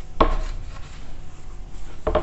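A whiteboard duster wiped across a whiteboard in rubbing strokes, with one loud stroke just after the start followed by quieter rubbing.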